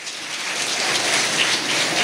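Audience applauding, building over the first half-second and then holding steady.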